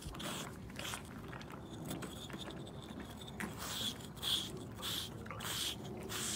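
A Slick 'n Easy shedding block, a pumice-like grooming stone, scraping over a horse's shedding winter coat in short strokes about two a second, pulling out loose hair. The strokes pause for a couple of seconds partway through.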